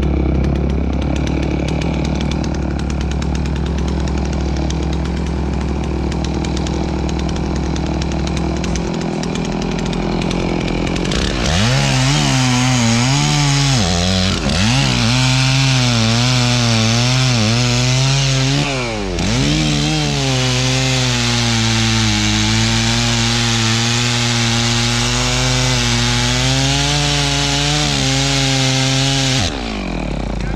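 Stihl chainsaw running, at first steady and lower. About a third of the way in it revs up and cuts into a felled trunk under load. Its pitch wavers and dips twice as the chain bogs in the wood, then the engine drops off just before the end.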